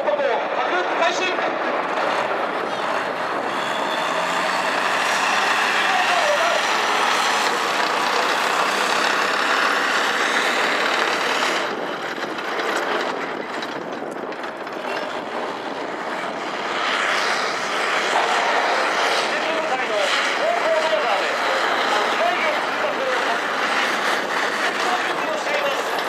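Tracked armoured bulldozer's engine running as it drives past, a steady mechanical noise that eases a little midway and comes back up. A distant voice is faintly heard over it at times.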